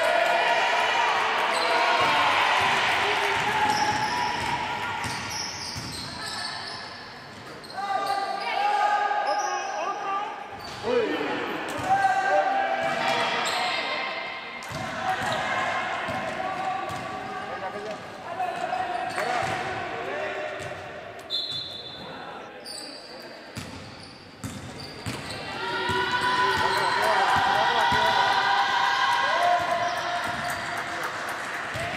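Basketball bouncing on a sports-hall floor during play, with shoes squeaking in short high chirps and players' voices calling out.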